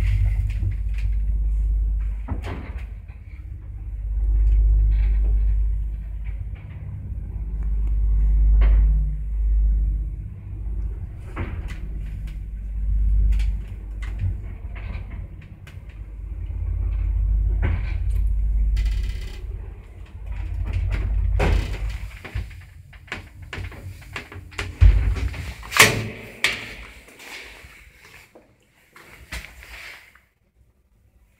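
ZUD elevator car travelling in its shaft: a low rumble that swells and fades for about twenty seconds. Near the end comes a run of sharp clicks and knocks.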